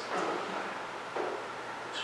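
A pause in a meeting-room conversation: steady low room hiss, with a soft murmured 'mm' right at the start and a faint brief voice about a second in.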